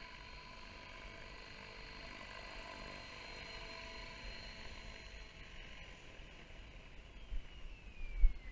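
A 550-size electric radio-controlled helicopter flying low: the faint, steady whine of its motor and rotors, with one tone falling in pitch near the end.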